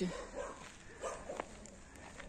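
Dog barking faintly, a few short barks.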